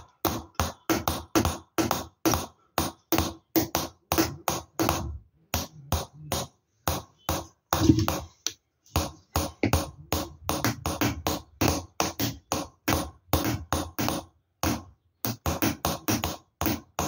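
Hammer tapping a steel chisel to engrave a copper plate, about three or four sharp strikes a second, each with a short metallic ring from the copper. The tapping stops briefly twice.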